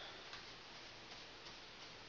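Paintbrush strokes on baseboard trim, brushing on semi-gloss paint: faint, short scratchy swishes of the bristles, about three a second.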